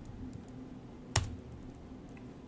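Computer keyboard typing: a few sparse, faint keystrokes with one sharper, louder key press a little past the middle.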